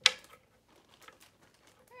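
A single sharp knock right at the start as a wooden toy-car block is pressed down onto a hard tabletop, followed by faint small clicks of wooden and plastic toy pieces being handled.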